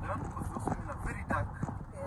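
Footsteps on a hard polished stone floor, sharp clicking steps about three a second, with faint voices underneath.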